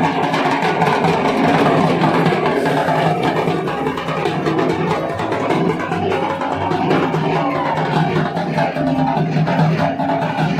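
A group of double-headed barrel drums beaten with sticks, many players together in a dense, continuous rhythm.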